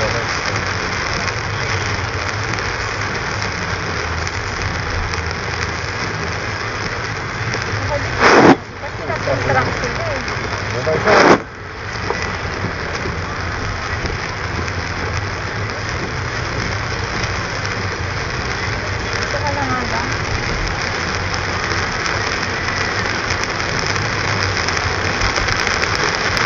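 Car interior driving through heavy rain: a steady wash of rain, tyre and engine noise. It is broken by two loud sudden thumps about three seconds apart, near the middle.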